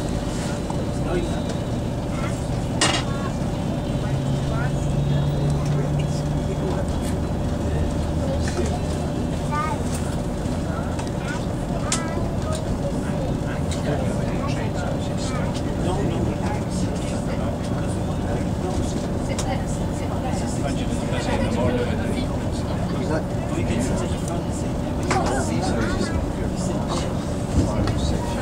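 Inside a Class 220 Voyager diesel-electric train pulling away from a station. The underfloor Cummins diesel engine's note rises and strengthens about four seconds in as power is applied. A steady whine and the rumble of the running train go on underneath as it gathers speed.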